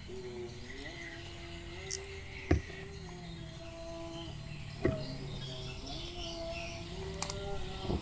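A distant voice singing in long, wavering held notes, with a few sharp metallic clicks of a plug wrench as a spark plug is fitted into a motorcycle's cylinder head.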